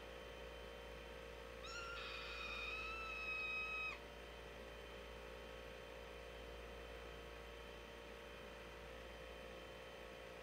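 One high-pitched cartoon scream, held on one pitch for about two seconds and cut off suddenly; the rest is a faint steady hum.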